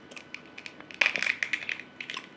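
Close-miked eating of a roasted beef rib: a few faint crackles, then a burst of rapid crackly crunching about a second in that thins out over the next second.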